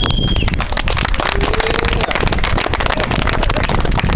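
Wind buffeting a handheld camera's microphone outdoors: a steady low rumble shot through with crackling clicks, with a brief high tone right at the start.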